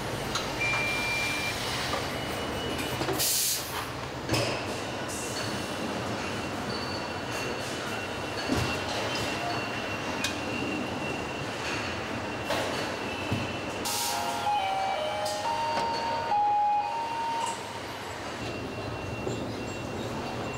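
Car assembly line noise: a steady machinery din. It is broken by short bursts of hissing about three seconds in and again around fourteen seconds. Between about fourteen and seventeen seconds there is a run of short electronic beeps of different pitches.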